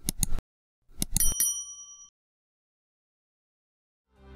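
Subscribe-button sound effect: a quick cluster of clicks, then about a second in a mouse-style click and a bright bell ding that rings out and fades over about a second.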